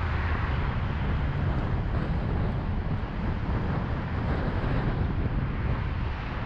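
Steady road and wind noise of a car driving at freeway speed in traffic: a deep rumble under an even hiss, unchanging throughout.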